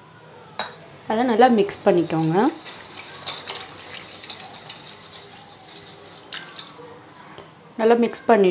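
A hand stirring and rubbing ingredients around the bottom of a stainless steel mixing bowl: a soft, steady swishing.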